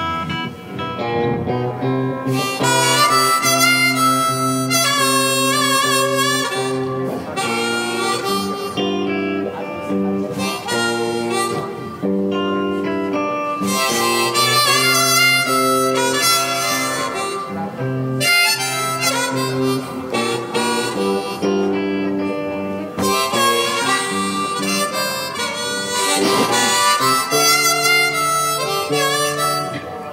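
Blues harmonica played in a neck rack over electric guitar accompaniment: a solo, one-man-band instrumental passage of held, wailing harp notes and chords over a steady guitar rhythm.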